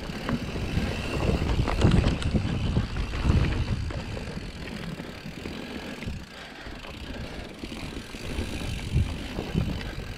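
Mountain bike rolling fast over a dirt trail: a rough rumble of the tyres on dirt and roots, with sharp knocks and rattles from the bike over bumps. It is louder over the first few seconds and eases off in the second half.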